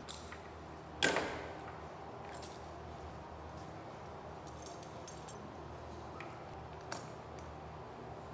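Metal bridle hardware, the bit and buckles, clinking and jingling as a bridle is put on a horse: a few short, sharp jingles, the loudest about a second in, with quieter ones later.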